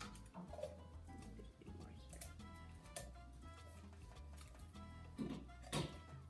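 Soft background music with held tones, with a few sharp clicks and rustles from handling sticky tape and paper around a can, the loudest near the end.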